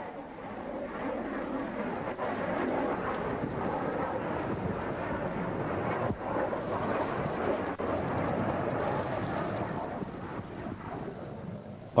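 Rushing roar of a jet aircraft passing, building over the first couple of seconds, holding, and fading near the end.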